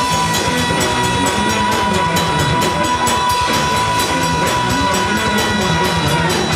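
Live rock band playing an instrumental passage: drum kit, electric guitars and bass guitar over steady drum strokes, with one long high note held throughout.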